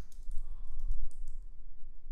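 Typing on a computer keyboard: a quick, irregular run of light key clicks that thins out after about a second and a half, over a low rumble.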